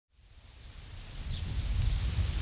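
Outdoor ambience fading in from silence: a low wind-like rumble and a soft hiss, with one faint, short, high chirp about halfway through.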